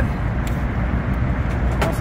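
A motor vehicle engine idling with a steady low rumble, with a light click about half a second in and another near the end.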